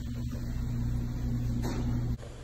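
A steady low electrical hum, like an appliance motor running, holding an even pitch throughout.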